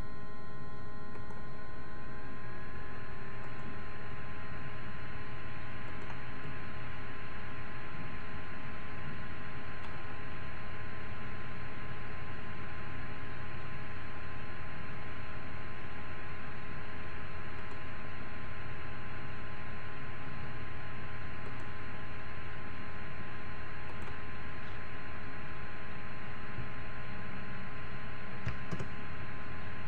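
Steady background hum and hiss with several fixed tones, and a few faint clicks now and then.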